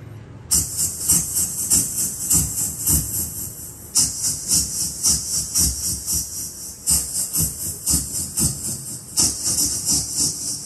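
A man making a rapid string of short hissing 's' sounds, about three a second, into a wireless handheld karaoke microphone, played loud through the speakers. The sounds test how the microphone carries treble and sibilance.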